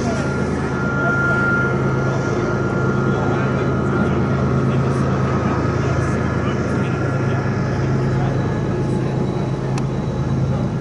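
A steady, unchanging low engine drone with a hum, overlaid by faint voices.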